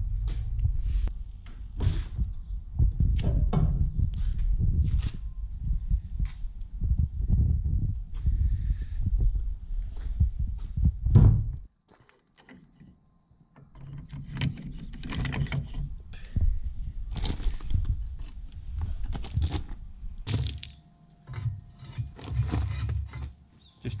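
Clanks, knocks and clinks of steel tools working on a mini excavator's hydraulic ram and boom pivot pin. The noise stops abruptly a little before halfway and picks up again a couple of seconds later with more scattered knocks.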